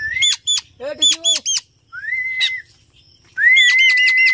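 Common myna calling: sharp chirps and short rising whistles, then a long steady whistle held for over a second near the end.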